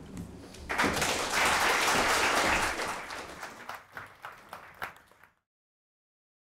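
Audience applauding. It swells about a second in, thins to scattered claps, and cuts off abruptly near the end.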